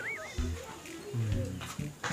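A high warbling comedy sound effect, a tone wobbling rapidly up and down, that trails off just after the start. It is followed by faint, low mumbled speech.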